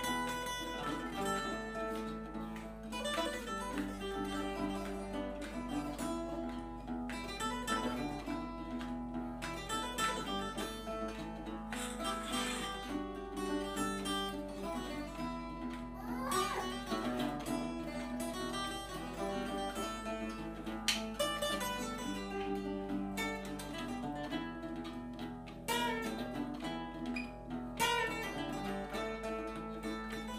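A steel-string acoustic guitar and a nylon-string guitar playing together as an instrumental duet, plucked notes and chords with no singing.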